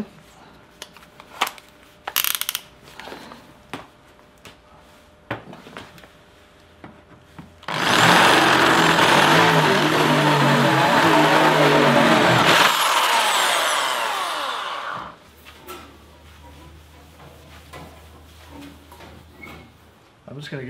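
Corded Bosch electric drill with a step drill bit boring through a flat plate: about five seconds of loud drilling starting some eight seconds in, then the motor winding down for about two seconds after the trigger is let go. Before the drilling, light clicks and handling knocks as the bit is set up.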